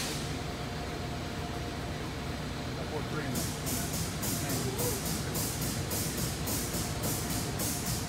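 Rapid, even puffs of air, about three or four a second, start a few seconds in over a steady shop hum: an air-operated oil pump cycling as motor oil is dispensed through a metered nozzle into the engine.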